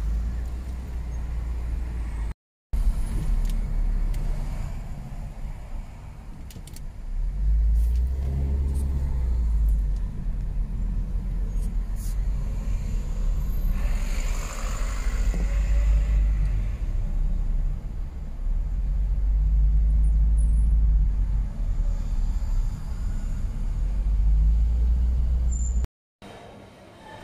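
City road traffic heard from a moving car: a steady low rumble of engines and tyres with other vehicles passing, and a louder hiss of passing traffic a little past the middle. The sound drops out briefly about two and a half seconds in.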